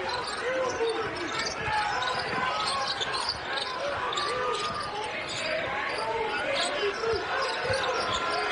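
A basketball being dribbled on a hardwood court, with short sneaker squeaks, over the steady noise of an arena crowd.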